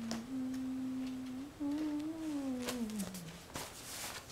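A person humming a slow tune: one long held note, then a phrase that lifts a little and slides down lower. A few short clicks sound through it.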